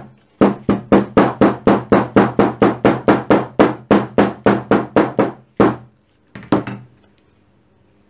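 Shoemaker's hammer tapping a taped leather back seam flat. It strikes quickly and evenly at about four a second for some five seconds, then gives two slower last taps.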